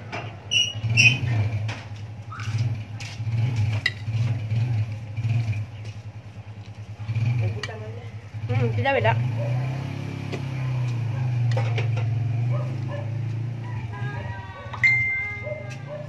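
Voices talking in the background over a low hum, with a few light clinks of a metal spoon against a plate.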